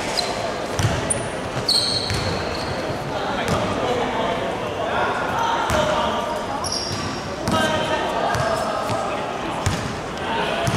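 Basketball bouncing on a wooden gym floor during a game, with short high-pitched sneaker squeaks and players' voices calling out, echoing in a large sports hall.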